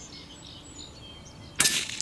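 A single shot from a CZ-455 Trainer bolt-action .22 LR rifle about one and a half seconds in: a sharp report that dies away quickly. Faint birdsong before it.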